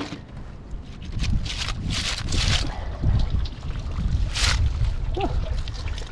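Wind rumbling on the microphone, with about three short splashy hisses of water running off a wet oyster cage as it is hauled out onto a wooden dock.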